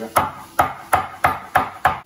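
Chef's knife chopping celery on a wooden cutting board: six even knocks of the blade hitting the board, about three a second, stopping near the end.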